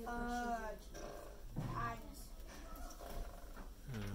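A drawn-out vocal hesitation, a voice holding an "ummm", in the first second, then a brief low murmur about halfway through, over a steady low room hum.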